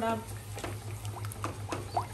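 A steel ladle stirring a thin, watery mixture in a kadai, with scattered light clicks and scrapes of the ladle against the pan over a steady low hum.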